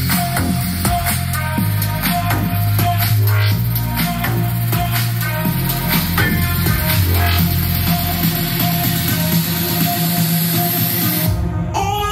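Bass-heavy electronic dance music played loud through a Gradiente GST-107 vertical tower soundbar, with a strong stepping bass line. A rising high sweep builds over the last few seconds, and the bass cuts out just before the end.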